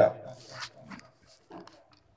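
A man's voice trailing off at the end of a phrase, then a pause in which only a faint breath and small mouth noises are heard.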